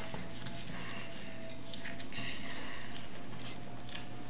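A plastic spoon stirring thick ricotta filling in a ceramic bowl: soft, irregular scraping and squishing.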